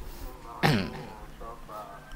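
A man briefly clearing his throat into a microphone, one short falling vocal burst about half a second in, followed by faint murmuring.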